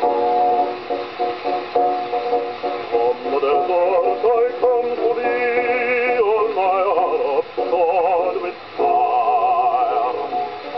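An early single-sided 78 rpm record of a ballad playing on an acoustic gramophone: male singing with orchestral accompaniment, the tone thin and boxy, with nothing above the upper middle register. The sustained notes waver in vibrato.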